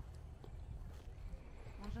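Quiet outdoor background with a steady low rumble and a few faint light clicks. A man's voice begins near the end.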